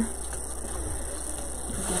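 Steady low electrical hum, with faint rustling of handling as an ornament is pressed into the arrangement.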